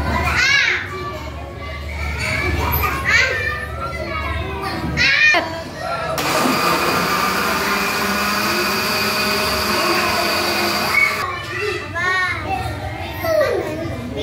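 Electric countertop blender running for about five seconds, puréeing watermelon chunks with water into juice. It starts abruptly about six seconds in with a steady whir and cuts off suddenly near eleven seconds. Children's excited voices come before and after.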